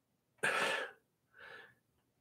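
Two short breathy sounds from a man: a louder one about half a second in and a softer one about a second later.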